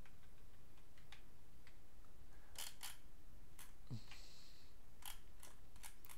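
Sparse, irregular clicks of a computer keyboard and mouse during code editing, about a dozen over six seconds, over a low steady room hum.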